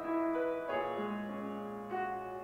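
Grand piano playing held chords, with a new chord struck about two-thirds of a second in and another near the end.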